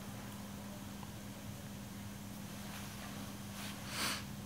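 Quiet room tone with a steady low electrical hum, and a short soft rush of noise near the end.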